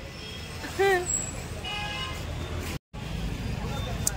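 Street traffic rumbling, with a vehicle horn sounding once for about half a second around two seconds in, and a short voice call a second before it. The sound breaks off suddenly just before three seconds, then the traffic rumble resumes.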